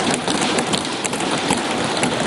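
Members of Parliament thumping their wooden desks in applause: a dense, steady patter of many hands beating at once.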